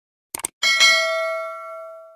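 Two quick clicks, then a single bell ding that rings on with bright overtones and slowly fades, a sound effect added in editing.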